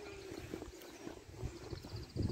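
Soft, irregular footsteps on a grassy woodland path, faint, with a few brief high chirps near the end.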